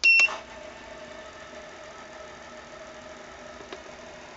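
A short two-tone beep with a click or two as the spindle controller's start button is pressed, then the Sangmutan 1100 W DC spindle motor on a Sieg mini mill runs with a steady, even hum at its 100 Hz setting.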